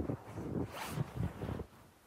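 Red plastic snow pusher being shoved through deep fresh snow: a quick run of rasping scrapes and crunches, sharpest about a second in, which then dies down near the end.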